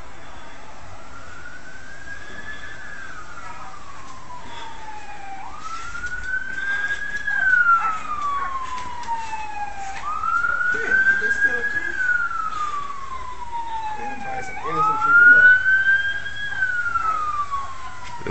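Police car siren on a slow wail: one tone climbing and falling in long sweeps, about four rise-and-fall cycles, each lasting four to five seconds.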